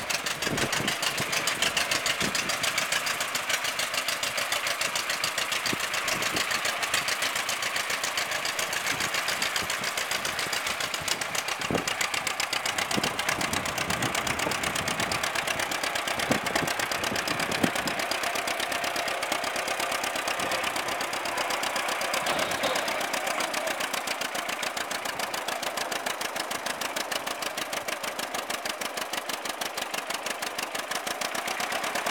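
1939 John Deere Model B tractor's two-cylinder engine running at low speed with an even popping exhaust beat while the tractor is driven, steady throughout with a few louder knocks.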